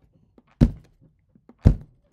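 Two dull thumps about a second apart, made by hands striking during sign language.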